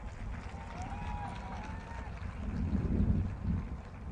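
Low wind rumble on an outdoor microphone during a pause in a speech, with faint distant voices in the background.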